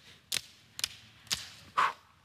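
A few sharp hand claps, about half a second apart, then a louder, longer sound near the end.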